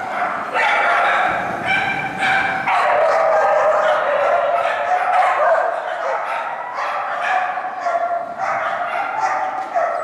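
A dog barking rapidly and repeatedly, short barks following one another almost without pause.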